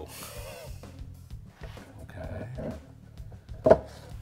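A single sharp wooden knock near the end as the glue-coated tabletop boards are set down together on the bar clamps, over soft background music.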